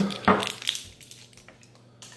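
A single knock on a tabletop, followed by a few brief rustles and clicks as small items and packaging from a parcel are handled.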